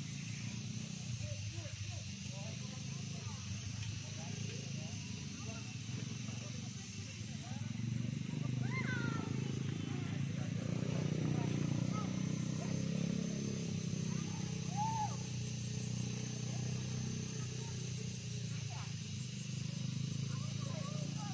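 Small ATV engine running steadily at a distance as the quad bike circles a dirt track. It grows louder about halfway through as the ATV comes nearer, then eases off again.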